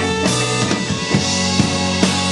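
Rock-electronic band playing live: a steady drum-kit beat, about two strikes a second, under held tones from electric violin, bass and guitar.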